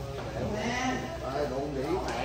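Men's voices with a drawn-out, wavering call or laugh, over a low steady hum.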